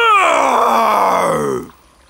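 Cartoon dinosaur's voiced roar: one long roar that falls steadily in pitch and cuts off about one and a half seconds in.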